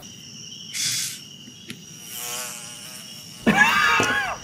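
Night insects such as crickets keep up a steady high-pitched chirring throughout, with a short breathy hiss about a second in. A voice starts speaking loudly over the insects near the end.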